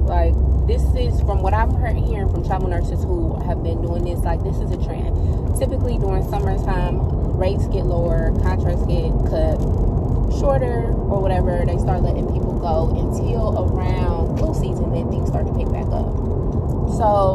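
Steady car noise from inside the cabin, a low rumble of engine and road, under a woman talking.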